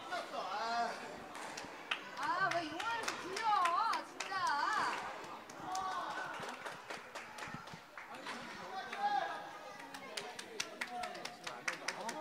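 Indistinct voices of several people talking in a large hall, loudest a few seconds in, with many short sharp clicks and taps scattered among them, more frequent near the end.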